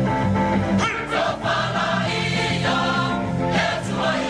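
Many voices singing a Samoan song (pese) together in chorus, the music for a siva dance.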